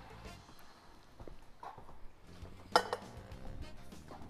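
Quiet background music, with one short sharp clank a little under three seconds in: a lidded pot set down on a gas hob's grate.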